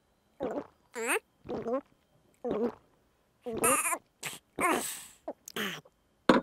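A cartoon character's voice making a string of short pitched vocal sounds, squeaks and breathy noises, with brief pauses between them.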